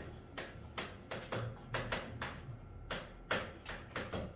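Chalk writing on a chalkboard: a quick, irregular run of sharp taps and short scratches, about three a second, as each letter and number is stroked on.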